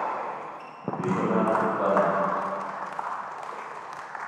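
Voices echoing in a large indoor tennis hall, with a tennis ball bouncing on the hard court; a sharp knock about a second in.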